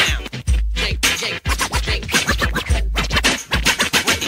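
Hip hop beat with a DJ scratching records over a deep, booming kick drum, in an instrumental break between rap verses.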